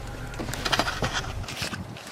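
Handling noise from a phone being moved about while it records: scattered rustles and light knocks. A low hum under them stops about a second and a half in.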